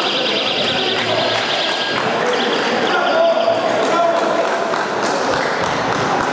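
Electronic judo scoreboard buzzer warbling rapidly for about two seconds, then a shorter burst, over voices in the hall: the signal that the hold-down has run its full 20 seconds for ippon.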